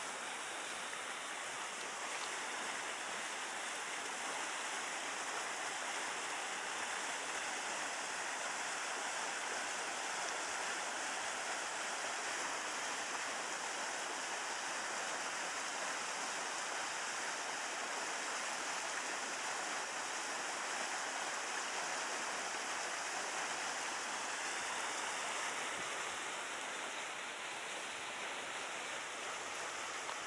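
Steady, even rush of water flowing in a concrete field ditch.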